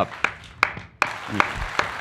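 A person clapping hands slowly: about five separate claps, two or three a second.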